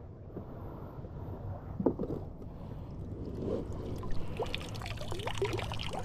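Water trickling and splashing out of a Proboat Blackjack 42 RC boat's hull as the boat is lifted and tipped on end to drain. It is the little water that got inside during the run.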